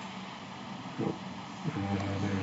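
Mostly steady faint background hiss, with a man's single spoken word, 'nope', about a second in and the start of his next words near the end.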